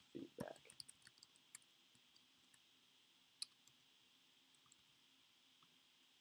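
Faint computer keyboard typing: a quick run of keystroke clicks in the first second and a half and one more about three and a half seconds in, with near silence between.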